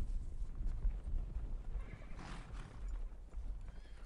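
Massed cavalry horses stamping and shuffling over a low rumble, with a short breathy horse sound about two seconds in.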